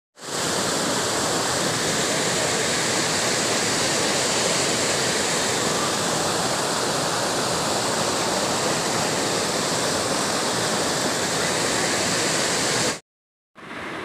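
Floodwater rushing through a breached earthen river embankment: a loud, steady wash of churning, turbulent water that cuts off suddenly near the end.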